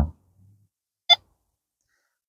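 A single short beep from an electronic carp bite alarm about a second in, set off by the wind moving the line rather than by a fish.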